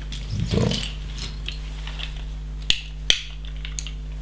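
Plastic LEGO bricks clicking as pieces are handled and pressed together, with a few faint clicks and then two sharp clicks close together near the end.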